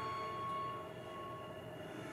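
A cello note fading away in the hall's reverberation, followed by a short quiet pause between phrases.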